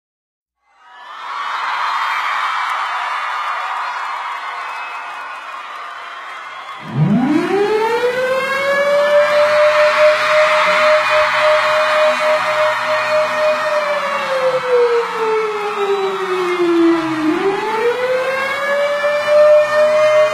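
A steady rushing noise for the first several seconds, then a siren-like wail that winds up from a low pitch to a steady high tone, holds, slides down for a few seconds and winds back up again near the end.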